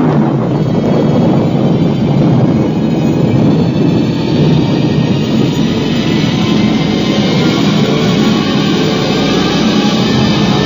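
Radio-drama sound effect of a rocket blasting off: a loud, steady rush of rocket-engine noise that begins at the 'fire' command and holds at full strength.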